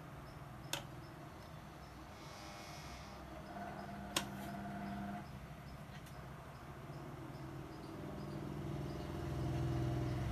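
Faint background hum and noise, with two sharp clicks, about a second in and near four seconds in, as a hand-held grid dip oscillator is handled against a receiver's metal chassis. A low hum swells near the end.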